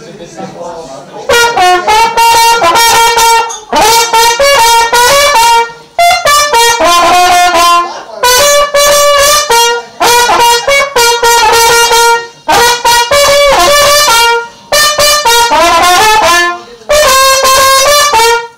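Trumpet played solo, loud and close to the microphone: a melody in phrases of one to two seconds with short breaks for breath, starting a little over a second in.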